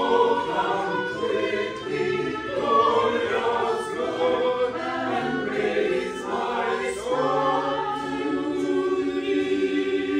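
Small church choir singing, the voices holding and changing sustained notes together.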